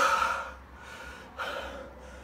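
A man gasping for air, acting out breathlessness: a loud gasping breath at the start, then a second, weaker breath about a second and a half later.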